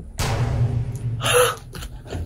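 A man's heavy breaths: a loud breathy exhale just after the start, then a short gasp-like breath about one and a half seconds in.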